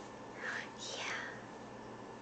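Soft whispering: two short, breathy whispered sounds, the first about half a second in and the second, brighter one falling away about a second in.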